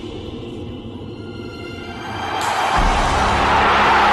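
Dramatic background music with low, sustained tones, then a broad rushing roar swells up about halfway through and stays loud.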